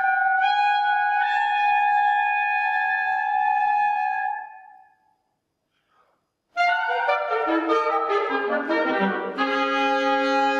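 Classical chamber music from three wind soloists and a small string-and-harpsichord ensemble. High sustained wind notes fade out about four and a half seconds in and are followed by about two seconds of silence. The music then comes back in suddenly with many overlapping held notes, with a lower line stepping downward beneath them.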